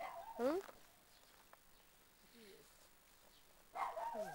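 A dog making a few short calls that slide in pitch: one near the start that rises steeply, a faint one about halfway through, and more at the end, mixed with people's voices.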